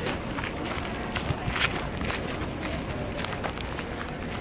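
Footsteps of several people walking on a gravel path, scuffing irregularly over a steady low rumble on a handheld microphone.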